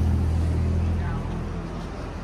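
A car engine running close by with a low, steady hum that fades after about a second as the car moves off.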